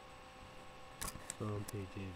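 Low steady hum with a few faint constant electronic tones. About a second in come three quick, sharp clicks, and a man's speech starts right after.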